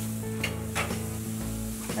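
Tomahawk ribeye sizzling as it is laid on a hot grate over charcoal to sear, with a couple of light clicks. Background music plays under it.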